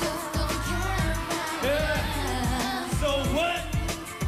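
Korean pop song with a sung vocal melody over a steady beat with bass and drums.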